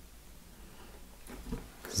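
Quiet room with faint handling noise from a small rubber RC crawler tyre being turned over in the hands, a few soft rustles about one and a half seconds in. A man's voice starts right at the end.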